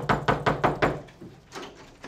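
A fist knocking hard and fast on a dark wooden hotel room door: a rapid burst of about eight knocks lasting about a second.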